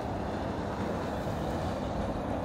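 Steady low outdoor rumble: wind buffeting the phone's microphone, mixed with the hum of distant freeway traffic.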